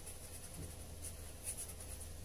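Felt-tip marker writing a word on paper: faint scratchy strokes, clustered about one and a half seconds in.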